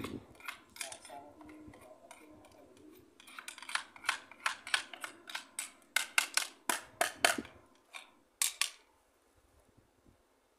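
Hand tools clicking and tapping against the metal fittings of a booster pump being installed: an irregular run of sharp clicks, coming thickest from about three seconds in and stopping shortly before the end.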